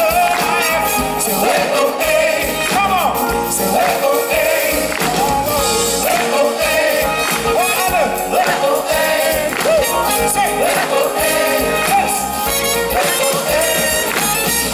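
Live pop band playing an upbeat song with drums, guitars and brass, and group vocals over it.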